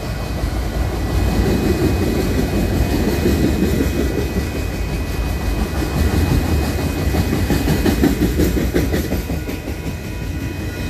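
Freight train of autorack cars rolling past close by: a steady rumble of steel wheels on the rails with a dense, rapid clicking and clatter from the wheels and cars.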